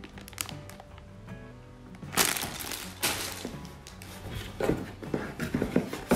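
Plastic bags of Lego pieces crinkling and a cardboard box being handled, with sharp crackles and rustles from about two seconds in, over steady background music.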